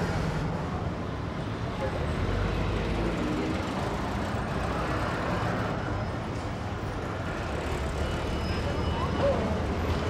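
Slow-moving road traffic of cars and vans: a steady low engine rumble with tyre noise as vehicles roll past.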